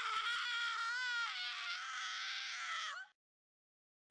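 One long, high-pitched scream that wavers about a second in, drops in pitch, and cuts off suddenly near three seconds.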